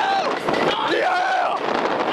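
Riders on a spinning roller coaster letting out wordless yells and exclamations that rise and fall in pitch. Underneath is a continuous rush of wind and ride noise.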